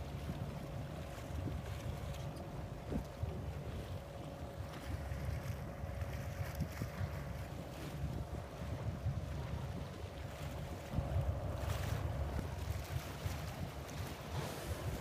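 Wind buffeting the microphone in an uneven low rumble, over a steady faint mechanical hum.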